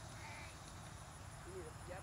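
Faint open-air background with a low steady rumble and a few brief, distant calls, one higher near the start and lower ones about a second and a half in.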